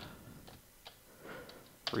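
A few faint, sparse clicks of computer keyboard keys as a terminal command is typed.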